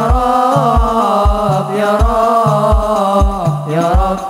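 Hadroh ensemble performing a sholawat: a male voice sings a winding Arabic-style melody over rebana frame drums, with a steady deep drum beat about twice a second.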